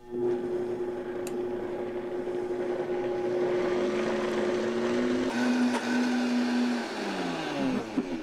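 Vitamix blender running on a thick avocado-and-cocoa pudding mix: it starts at once with a steady hum, drops to a lower pitch a little past halfway, then winds down with a falling whine near the end.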